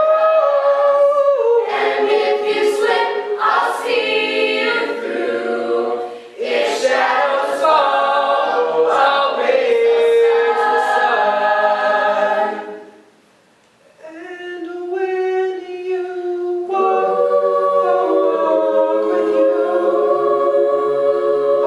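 A cappella vocal group of young men and women singing in harmony, a male lead voice on a microphone over the backing voices, with no instruments. About two-thirds of the way through the singing breaks off for about a second, then resumes with softer held chords.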